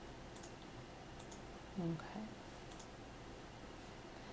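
Quiet room tone with a few faint, scattered clicks. A short hum from a woman's voice comes about two seconds in.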